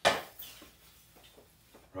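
A hockey stick blade strikes a puck on a plastic shooting pad: one sharp crack right at the start, followed by a few faint light ticks.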